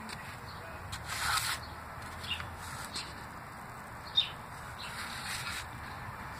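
Faint handling noises from a plastic model truck cab being moved about in the hands: a few soft rustles and light clicks, the sharpest about two-thirds of the way through.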